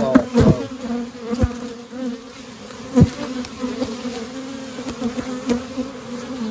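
Honeybees buzzing steadily around an open hive, a colony in good, calm shape during a nectar flow. A few short knocks sound over the hum, the loudest about three seconds in.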